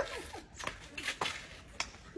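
A few short, sharp taps and clicks, spaced unevenly about a second apart, over a low background.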